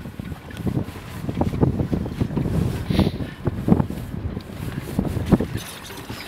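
Wind buffeting the microphone in uneven gusts, with irregular short thumps and knocks.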